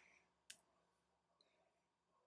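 Near silence, with one short, faint click about half a second in and a few fainter ticks later: a stylus tapping on a drawing tablet.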